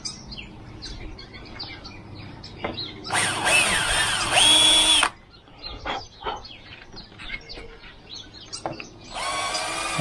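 Cordless drill with a step bit boring a hole through a plastic car body skirt: a whine of about two seconds that rises in pitch as the drill speeds up, then holds. A second burst of drilling starts near the end.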